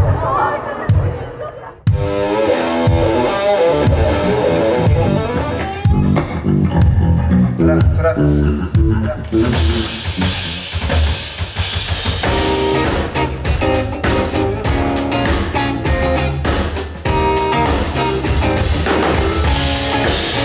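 Pop-rock band music with guitar, bass and a drum kit. It starts after a brief dip about two seconds in with a melodic line over bass, and drums with cymbals come in about halfway through, keeping a steady beat.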